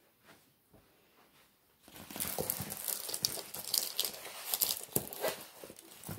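Clear plastic film on a diamond painting canvas crinkling as the canvas is handled, starting about two seconds in and fading after some three and a half seconds.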